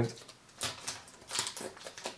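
Soft handling noises of plastic bottles on a tabletop: two brief rustling clicks, about half a second and a second and a half in, with fainter taps between.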